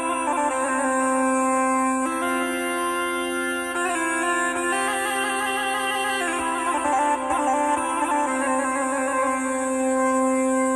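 Traditional Balkan folk music: a steady low drone under a held, slowly wavering melody line, with no drumbeat.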